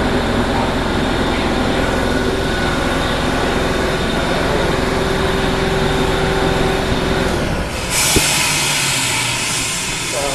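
Factory production machinery running: a loud, steady rumble with a few held tones. About eight seconds in it gives way to a steady high hiss, with a single click just after.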